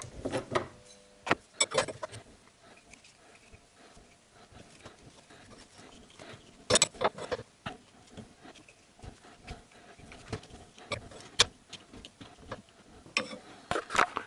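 Scattered clicks and knocks of a metal stabilizer-bar bushing clamp being handled and fitted over the rubber bushing on the car's underside, the sharpest knocks about seven and eleven seconds in.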